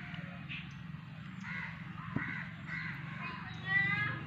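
A bird cawing a few times with short harsh calls, the loudest call near the end, over a steady low hum.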